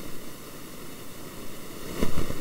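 Steady hiss of microphone static, with faint steady whining tones running through it.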